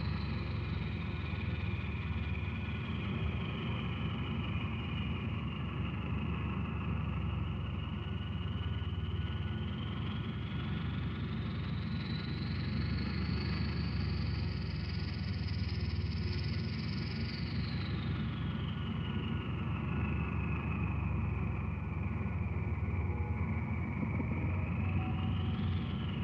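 Electronic film soundtrack: a dense low rumbling drone with a steady high tone over it, and a thin whistle that slowly glides down, climbs to its highest about two-thirds of the way through, then falls again.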